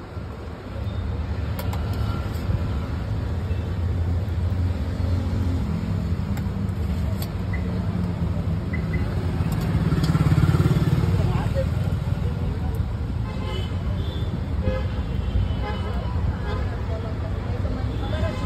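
Roadside traffic: a steady rumble of passing vehicle engines. One vehicle passes louder about ten seconds in.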